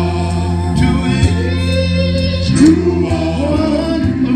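A male vocal group singing in harmony into microphones, with long held notes over a steady low bass note.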